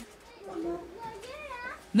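A small child's voice speaking, higher-pitched and quieter than the adult speech around it, for most of the two seconds.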